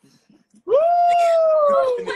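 A person's voice holding one long, high drawn-out call, starting under a second in and sliding slowly down in pitch.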